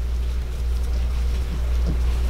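A steady low hum, with faint soft scratching as a scalpel slits the leathery shell of a ball python egg.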